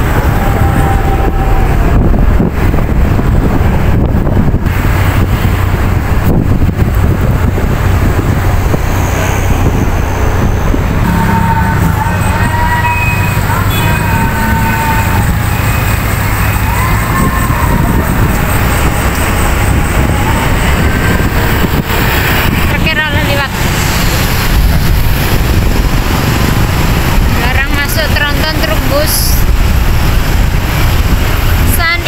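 Busy road traffic heard from a moving vehicle: a steady rush of engines, tyres and wind on the microphone, with cars and motorbikes passing close by. Some pitched, wavering calls or voices rise above the traffic in the middle and again near the end.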